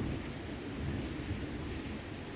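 Heavy rain heard from indoors: a steady hiss with a low rumble underneath.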